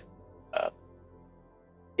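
A single short spoken 'uh' about half a second in, otherwise faint steady background hum in a pause of a podcast conversation.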